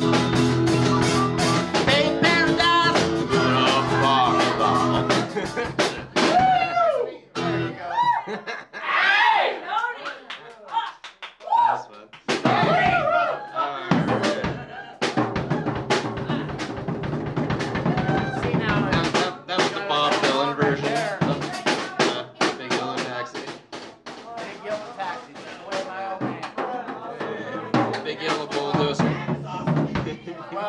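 Live acoustic guitar strumming with a drum kit, and a man's voice singing in sliding phrases. There is a laugh about six seconds in.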